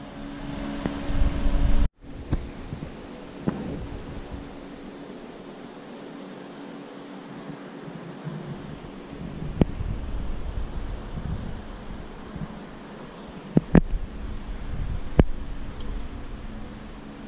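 Steady low machine hum with a rushing noise, like a fan or pump, broken by a few sharp knocks near the end. A louder rumble fills the first two seconds and cuts off abruptly.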